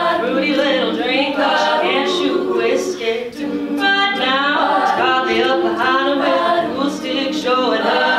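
A women's a cappella group singing: a solo voice at a microphone over close vocal harmonies from the rest of the ensemble, with no instruments. The singing dips briefly about three seconds in between phrases.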